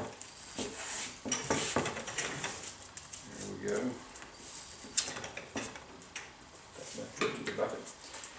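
Tyre-mounting lube applicator swab brushing wet lube around the rubber bead of a motorcycle tyre in short scrubbing strokes, with a few clinks of metal tools being handled.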